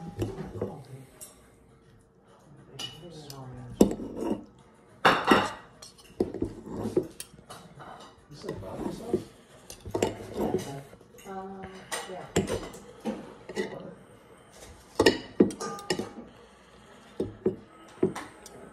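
Cutlery clinking and scraping against a dish as spaghetti is cut up, a run of sharp, irregular clinks.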